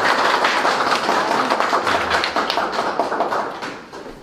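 Audience applauding, a dense run of clapping that fades away near the end.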